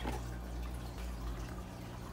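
Quiet background with a low steady hum under faint hiss, and no distinct event; the hum shifts about a second and a half in.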